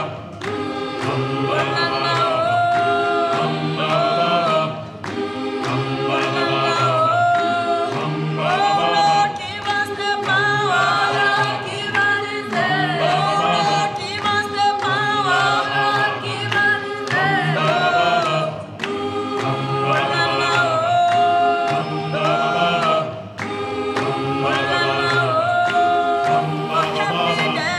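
Background music: an unaccompanied choir singing in harmony, low voices under a higher melody, in phrases with short breaks between them.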